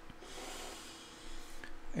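A person breathing in close to the microphone: a soft, hissy inhale lasting about a second, with a fainter breath again near the end.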